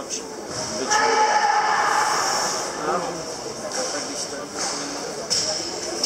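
A high voice, likely a woman's, gives a long, held call about a second in, lasting a second and a half, with other voices around it.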